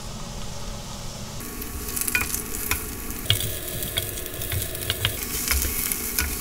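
Julienned potato, onion and carrot sizzling in oil in a nonstick frying pan while a wooden spatula stirs them. The sizzle grows louder about a second and a half in, and the spatula clicks against the pan several times.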